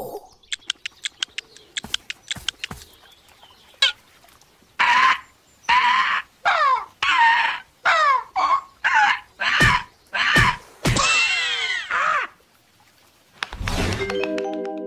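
Cartoon chicken clucking: a run of about ten clucks with bending, falling pitch, the last one drawn out longest. Before the clucks comes a string of quick light ticks, and a brief thump lands near the end.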